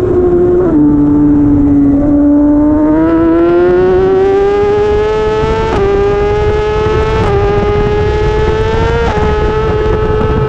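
Racing motorcycle engine running hard, heard from on board the bike. The note drops just under a second in, then climbs steadily under acceleration, with short dips in pitch at upshifts about six, seven and nine seconds in.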